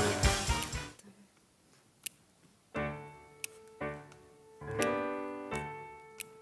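Band music dies away, and after a short pause a grand piano plays three separate chords, each left to ring and fade, with a couple of sharp clicks in between.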